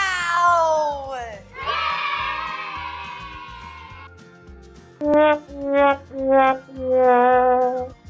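Comic trombone sound effect: after a falling glide and a long tone that slowly sinks, four notes step downward, the last held longest, the 'wah-wah-wah-waaah' sad-trombone gag.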